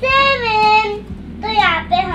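A young girl's voice in drawn-out, sing-song speech: two long phrases, the second starting about one and a half seconds in.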